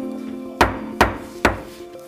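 A gavel struck three times, sharp knocks about half a second apart, calling a meeting to order. Soft sustained notes of background music continue underneath.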